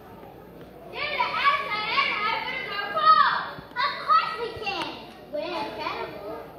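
High-pitched children's voices shouting and calling out in three loud stretches, starting about a second in, with short breaks.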